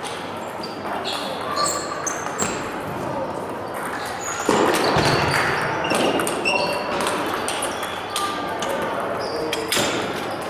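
Table tennis balls striking bats and tables in a large hall: short, sharp ticks, some with a brief high ring, come from a rally at the near table and from other tables at once. Voices are in the background, and a louder rush of sound comes about halfway through.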